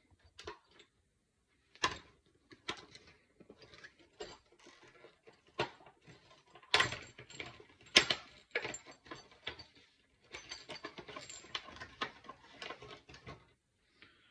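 Hands handling small metal parts and packaging: irregular clicks, knocks and light rattling, with the sharpest knocks about 2, 7 and 8 seconds in and a run of small scratchy clicks near the end.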